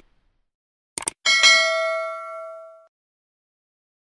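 Subscribe-button sound effect: two quick mouse clicks about a second in, then a notification bell ding that rings out and fades over about a second and a half.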